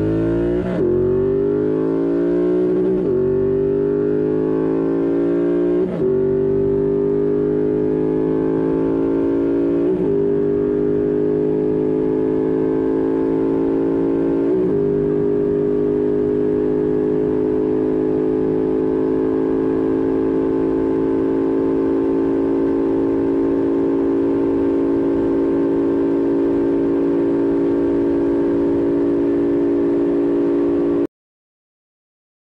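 Triumph Thruxton R's 1200 cc parallel-twin engine at full throttle, shifting up through the gears: the pitch climbs and drops at each of five quick upshifts in the first fifteen seconds, then holds in top gear, creeping slowly higher as the bike nears 140 mph.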